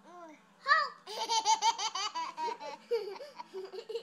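A baby laughing at being tickled on the feet: a loud squeal a little before one second in, then a fast run of short, high-pitched laughs, about five a second.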